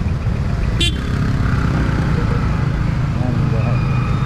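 Motorcycle riding through town traffic: a steady low rumble of engine and road noise, with a short high horn beep about a second in.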